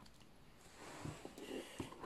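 Quiet room with faint handling sounds: soft rustling and a couple of light taps as a marker and a paper workbook are handled on a table.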